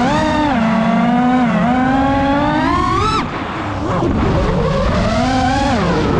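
FPV quadcopter's brushless motors whining, the pitch sweeping up and down as the throttle changes. About three seconds in the whine climbs to a high peak, then drops sharply as the throttle is cut, and rises again near the end.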